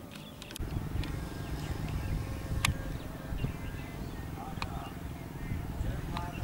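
Low, irregular rumble of wind buffeting the microphone, starting about half a second in, with a couple of sharp clicks over it.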